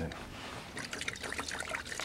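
Small paintbrush being swished in a can of paint thinner: liquid trickling and sloshing, with a quick run of light clicks from about the middle on.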